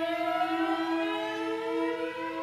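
Free improvisation for flute and two violas: one note held steady while two other pitches slide slowly upward in long glissandi.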